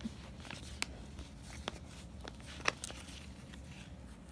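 Faint handling sounds of a handmade book-page paper envelope being lifted and turned: light paper rustles and a few soft clicks and taps, the sharpest about two-thirds of the way through, over a low room hum.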